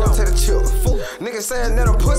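Trap-style hip hop track: rapping over a beat with a deep, sustained bass. The bass drops out for about half a second midway, then comes back.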